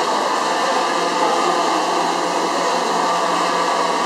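DJI Phantom 3 Professional quadcopter hovering, its propellers giving a steady whirring hum over the even background din of a crowded hall.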